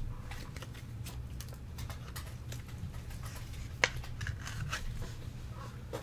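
Faint handling noises of a trading card and a clear plastic card sleeve, small rustles and soft clicks, with one sharp click a little under four seconds in, over a steady low hum.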